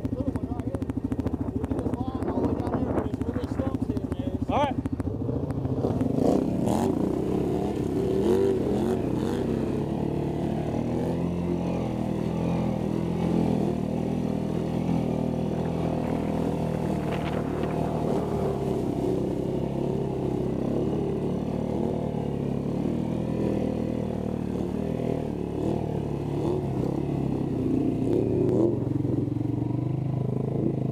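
Snorkeled ATV engine running steadily, then revving harder under load from about six seconds in as the quad ploughs through deep muddy water, its pitch wavering with the throttle.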